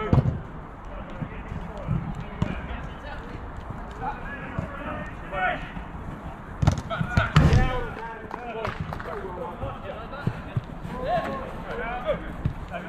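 A football being kicked and knocking against the pitch's boards in sharp thuds, with a cluster of loud knocks about seven seconds in, among players' shouts across the pitch.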